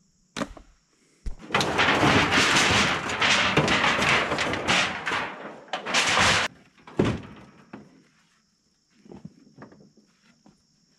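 Crumpled aluminum siding sheets crinkling and rattling as they are handled and pulled from a scrap pile, for about five seconds. A single sharp clank follows about seven seconds in, then a few faint knocks near the end.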